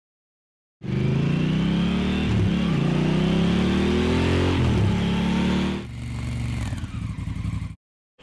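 Motorcycle engine accelerating, its pitch climbing and dipping twice at gear changes. About six seconds in it drops to quieter running, then cuts off abruptly just before the end.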